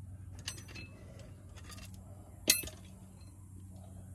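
Two metallic clinks of loose steel tools or parts under a truck, each ringing briefly: a lighter one about half a second in and a sharper, louder one about two and a half seconds in.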